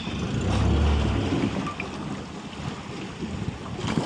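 Wind buffeting the microphone over a steady wash of open water around a small boat. A low rumble of wind comes about half a second in.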